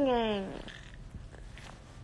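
A toddler's drawn-out hum with a bottle in his mouth, sliding down in pitch and fading out about half a second in; then quiet.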